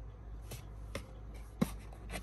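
Small plastic fasteners being pulled out of a cardboard toy-packaging backing: a few light clicks and rustles of card, the sharpest about one and a half seconds in.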